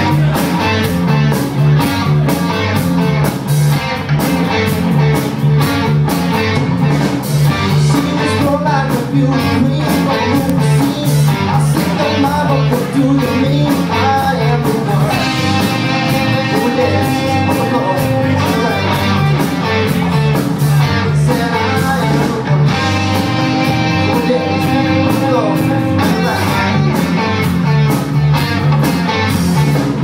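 Live rock band playing an upbeat song at full volume: electric guitars, bass and a steady drum beat.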